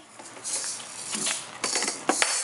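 Small egg-shaped toy maracas rattling as they are shaken and knocked against a plastic toy drum, a soft hissy rattle with a cluster of quick clicks near the end.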